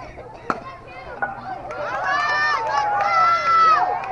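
A bat hitting a baseball with one sharp crack about half a second in, followed by voices shouting, with long held yells that peak near the end.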